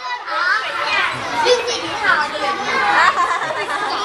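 A group of schoolchildren talking and calling out over one another, many high children's voices at once with no single voice standing out.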